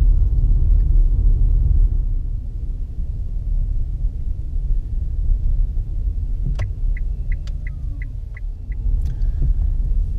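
Low rumble of an electric car rolling slowly, heard inside the cabin, easing a little after about two seconds. Past the middle comes a sharp click, then a run of about eight short high beeps, some four a second, from the car.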